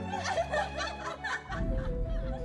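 Giggling laughter over light background music. The laughter stops about a second and a half in, leaving the music with held notes over a low rumble.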